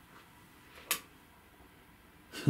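A single short, sharp click a little under a second in, against faint room tone.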